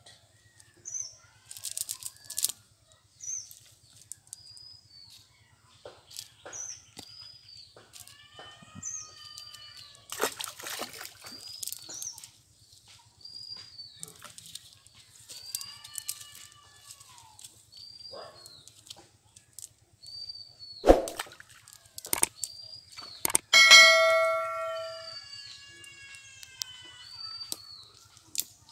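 A bird calling over and over with short high chirps about once a second, with lower, drawn-out calls now and then. Scattered rustles and clicks from handling a cast net, with one sharp knock and a brief ringing tone a little after two-thirds of the way through.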